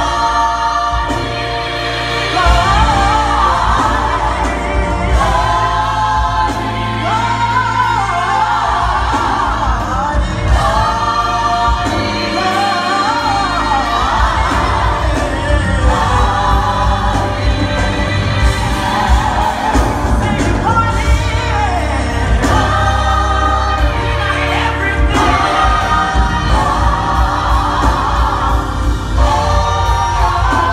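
Live gospel choir singing with instrumental backing and a deep bass line underneath, the voices rising and falling together in full harmony.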